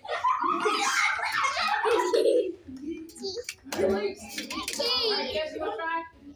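Children's voices chattering, with a giggle among them, and a few short sharp knocks in between.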